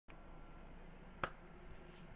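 A single sharp click about a second in, over a faint steady hum.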